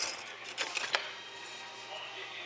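Broken pottery sherds clicking and clinking against each other and the plastic tub as a hand rummages through them, a quick cluster of clicks about half a second to a second in.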